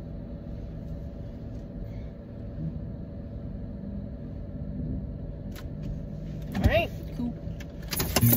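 Car cabin road noise: a steady low rumble from the moving car. Near the end a short vocal exclamation rises and falls in pitch.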